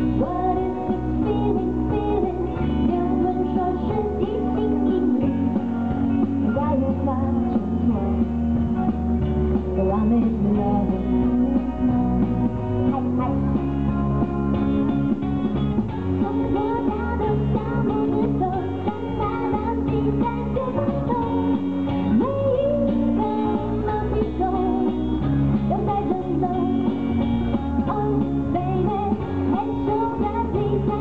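A female pop singer singing live into a handheld microphone over a steady instrumental accompaniment with bass and guitar, played through the stage sound system.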